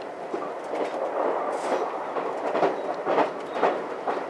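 Inside the front car of a JR West 283 series "Ocean Arrow" electric train under way: a steady running rumble, with wheels clicking and knocking over the rail joints a few times a second at irregular intervals.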